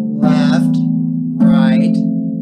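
Lever harp: two blocked root-position triads plucked about a second apart, one by each hand in turn, each chord ringing on until the next is struck.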